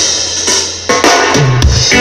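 Live ska band with drum kit: the music drops back for a moment, then loud drum hits bring the band back in, with a low bass note and the singer's voice returning near the end.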